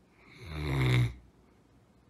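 A large long-haired dog snoring in its sleep: one loud snore that swells over about a second and then stops abruptly.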